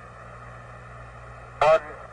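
Steady static hiss and low hum of the Apollo 11 radio downlink from the lunar surface, with a short word of a man's voice, thin and radio-filtered, breaking in near the end.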